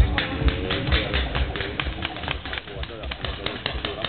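Paintball markers firing in rapid, uneven bursts of shots, several a second, with voices under them.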